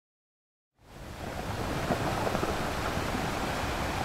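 Ocean surf: a steady wash of breaking waves that fades in about a second in, after a moment of complete silence.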